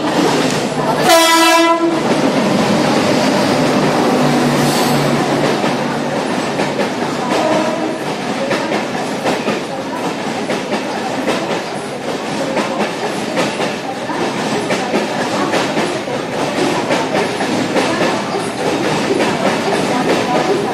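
Indian Railways WAP-7 electric locomotive sounds one short, loud horn blast about a second in as the express runs into the station, followed by the steady running noise of LHB coaches passing at speed, with wheels clacking over rail joints.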